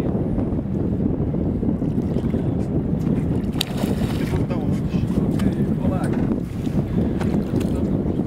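Steady low rumble of wind on the microphone aboard a small boat. About four seconds in, a hooked fish splashes as it thrashes at the surface beside the hull.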